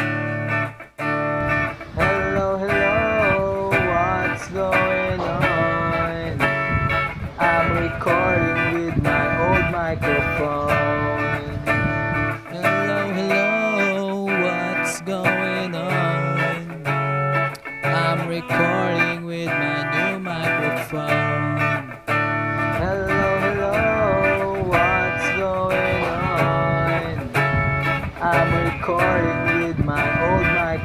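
Electric guitar played through a Marshall combo amplifier: a continuous lead line of picked notes with string bends.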